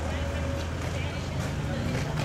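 Street ambience: a steady low rumble with faint voices in the background.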